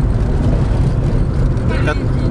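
Car driving along a road, heard from inside the cabin: a steady low rumble of engine and road noise.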